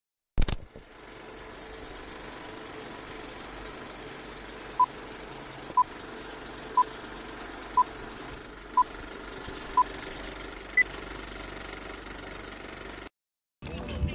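Vintage film countdown leader sound effect: a steady projector-like running noise with hiss, and a short beep once a second six times, then one higher beep. A sharp click opens it, and it cuts off abruptly near the end.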